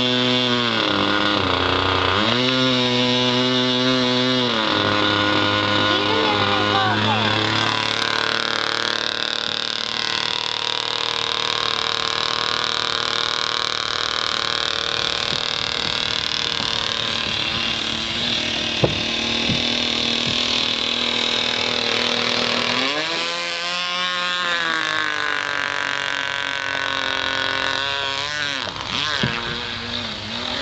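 Merco 61 two-stroke glow engine of a radio-controlled nitro model boat running at speed, its pitch rising and falling as the throttle is opened and eased in the first few seconds and again about three-quarters of the way through, with a long steady high-revving run between.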